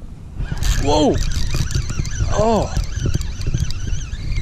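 Wind and handling noise on the microphone while a hooked fish is fought on a spinning reel, with scattered sharp clicks. There are two short exclamations that rise and fall in pitch, about a second in and again near the middle.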